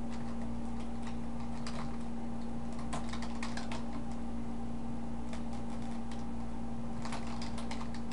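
Computer keyboard typing in irregular bursts of keystrokes, over a steady low hum.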